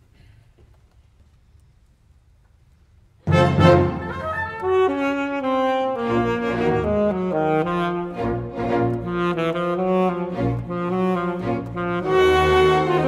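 A hushed concert hall, then about three seconds in a saxophone and symphony orchestra come in together loudly, and the saxophone carries a moving melody over the orchestra.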